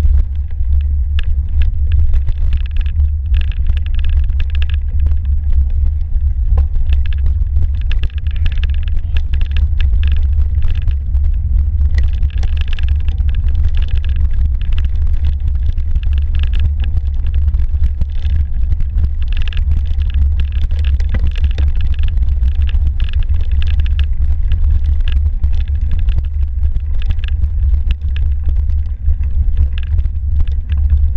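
Steady low rumble of wind and trail vibration on a mountain-biking camera's microphone while riding through snow, with on-and-off patches of higher-pitched noise from the bike rolling over the trail.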